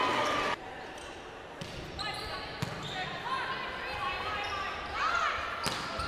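Ambience of an indoor volleyball match in a large gym: players and crowd voices echoing in the hall, with a few sharp thuds.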